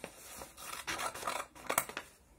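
Small scissors snipping through a sheet of coloured paper while cutting out a circle: a few separate snips, the sharpest one near the end.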